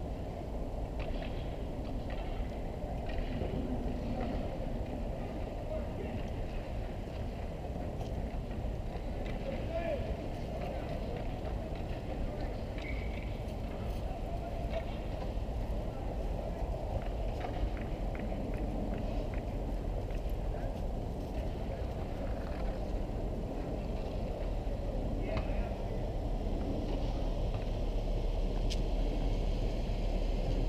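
Steady wind rumble on the microphone of a camera out on an open-air ice rink, with distant voices of players and spectators and occasional faint knocks from the play far down the ice.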